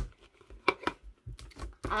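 Sticky slime being squeezed and pulled in the hands, giving a few short wet clicks and crackles as it sticks and comes away from the fingers.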